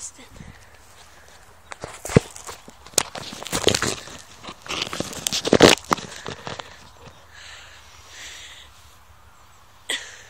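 A run of close knocks and rustles: a sharp knock about two seconds in, then dense clusters of knocks and scuffs around four and five and a half seconds, dying down to faint rustling.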